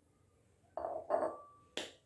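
A drinking glass set down on a tabletop with one sharp knock near the end, after two short vocal sounds from the drinker.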